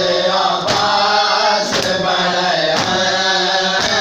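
Men's voices chanting a noha, with the slaps of hands beating on chests (matam) landing together on the beat about once a second, four strokes here.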